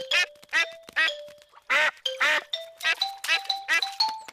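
Cartoon ducks quacking: a quick run of about a dozen short quacks over background music.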